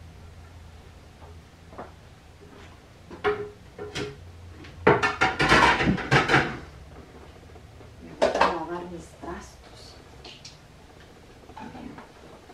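Dishes and cutlery clattering and clinking as hand-washed dishes are dried and stacked away. The loudest burst of clatter comes about five to six and a half seconds in, with another around eight seconds.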